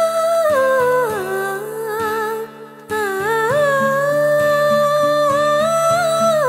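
Background music: a wordless humming voice holds long notes that slide down and back up, pausing briefly about halfway, over a repeating plucked-string accompaniment.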